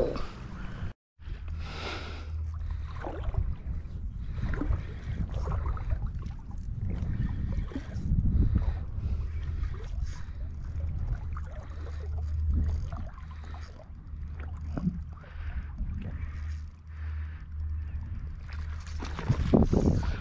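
Wind rumbling on the microphone, with shallow lake water lapping and sloshing around a wading angler's legs. The sound drops out briefly about a second in.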